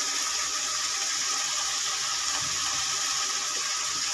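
Prawns, onions and tomatoes sizzling in oil in an aluminium kadai, a steady even high hiss.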